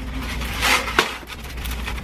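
Styrofoam insulation panels handled and slid apart, foam rubbing on foam in a short scrape a little over half a second in, then a sharp click about a second in.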